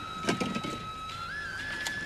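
A sustained high electronic tone from the film's soundtrack, holding steady and then sliding up a step about one and a half seconds in. A few soft knocks and rattles sound in the first second, as drinks are taken from a shop's drinks fridge.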